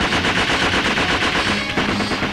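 A machine gun firing rapidly and without a break over background music.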